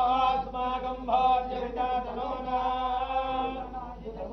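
Hindu priest chanting Sanskrit puja mantras in a melodic recitation with long held notes.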